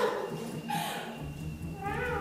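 A cat meowing over background music: a falling cry about halfway through, then another pitched call near the end.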